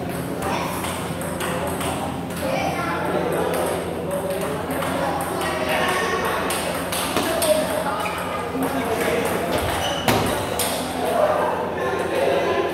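Table tennis ball clicking off the paddles and the table during a rally, with a sharper hit about ten seconds in, over a murmur of onlookers' voices.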